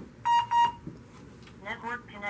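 Two short electronic beeps in quick succession, a quarter of a second in, from the device pairing over Wi-Fi, followed near the end by a faint voice.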